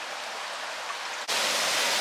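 A small river rushing steadily through a stone bridge arch. About halfway through, the sound jumps suddenly to a louder, brighter hiss.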